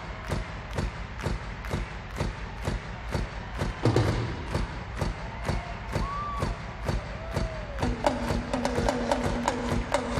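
Live arena rock band: a drum kit plays a steady beat of about four hits a second, with a few short whoops over it. About eight seconds in, a synthesizer comes in with a held low note and a repeating higher riff on top of the drums.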